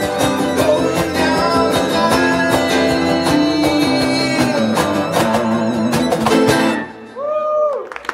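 A small live band plays the close of a song: a man singing over acoustic guitar, electric guitar, fiddle and a cajon beat. The music stops about seven seconds in.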